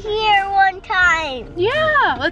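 A young boy making wordless, high-pitched vocal sounds: several sliding calls in a row, each rising and falling in pitch, one held briefly on a steady note.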